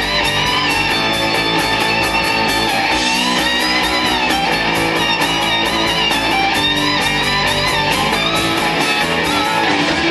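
Live rock band playing an instrumental passage, with electric guitar to the fore over bass and drums; no singing.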